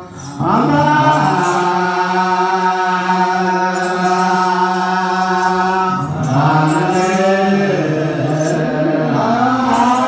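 Ethiopian Orthodox liturgical chant (mahelet): male voices singing long, held notes together. After a short break at the start the line steadies, then moves to a new pitch about six seconds in and bends upward near the end.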